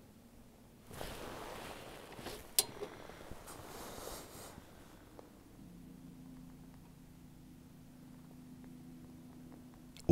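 Faint rustling, like clothing or gear being handled, with one sharp click a couple of seconds in, then a faint steady low hum through the second half.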